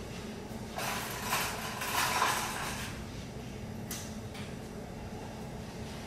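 Off-camera clatter and rummaging in a kitchen drawer while a fork is fetched, then a single sharp knock about four seconds in, over a low steady room hum.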